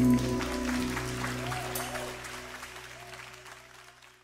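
Audience applause over the last held chord of a live band, the whole sound fading out steadily to near silence.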